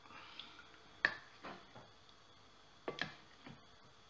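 A ladle knocking lightly against a glass mixing bowl while stirring crêpe batter: a few short clicks, the sharpest about a second in and near three seconds.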